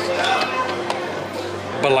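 Background music with a sharp click from a hard plastic popcorn bucket being handled and pried at, about halfway through; a man's voice starts near the end.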